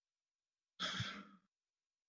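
Near silence, broken about a second in by one short, faint breath from a man.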